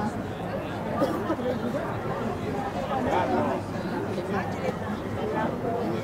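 Indistinct chatter of several people talking at once, with overlapping voices but no clear words.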